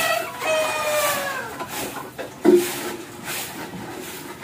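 A rooster crowing: one long call that sinks in pitch and ends about one and a half seconds in. Then, about two and a half seconds in, comes a sudden, louder knock followed by a lower, steadier sound.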